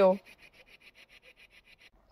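The last syllable of a woman's spoken sentence, then a faint, rapid, even rasping pulse of about ten strokes a second that stops at a cut near the end.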